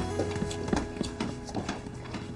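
Background music score: a soft, even ticking rhythm of about four clicks a second over a steady low held note.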